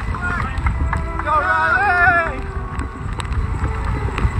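Wind buffeting the microphone as a steady low rumble, with a voice calling out briefly about a second in.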